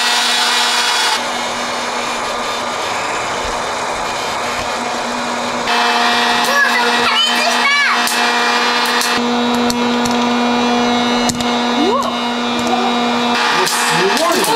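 Electric hot-air popcorn popper running, its fan motor giving a steady whine over a rush of blown air. In the second half a few sharp pops cut through as kernels start to burst.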